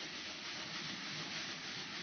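Sandpaper on a sanding block rubbed back and forth over a dried spackle patch on a sheetrock wall, a steady scratchy hiss. The patch is being sanded down flush because it still stands a little raised.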